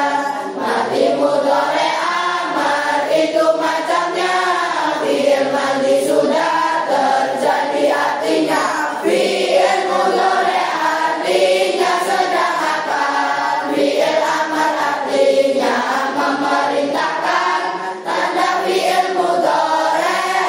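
A class of pesantren pupils, boys and girls, singing a nadhom (Arabic grammar verse of nahwu) together in unison to a chant-like melody.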